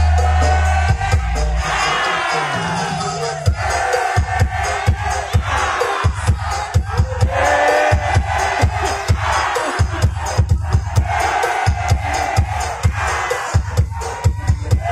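A crowd chanting and singing together over a fast steady drumbeat, about four beats a second.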